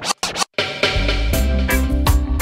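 A DJ scratching a vinyl record on a turntable, the crossfader chopping it into a few short cuts with silent gaps for about half a second. Then the next reggae track drops in with a heavy, steady bass line.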